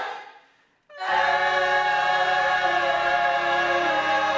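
Mixed choir singing: a held chord fades out, and after a brief pause the choir comes back in about a second in and holds the next chord steadily.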